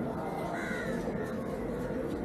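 A crow caws once, a short harsh call about half a second in, over a steady background murmur of people.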